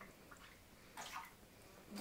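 Faint water sounds from an absorbent towel pressed into a shallow glass dish of water and lifted out, a couple of soft sounds about a second in; otherwise near silence.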